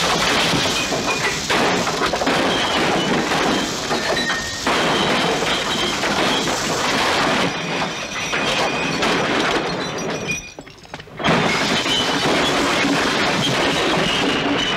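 Glass and wooden bar fittings being smashed with clubs: near-continuous crashing and shattering of bottles and glassware, with a brief lull about ten and a half seconds in.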